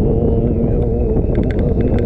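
Motorcycle engine running steadily as the bike rides slowly, with wind rumble on the camera microphone.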